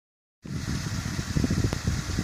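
Low, uneven outdoor rumble starting about half a second in, with a faint click near the end.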